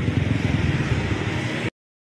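Motorcycle engine idling steadily with a rapid low pulsing, cut off suddenly near the end.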